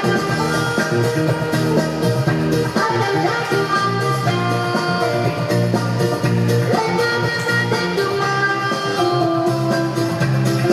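Zumba dance music with a steady beat.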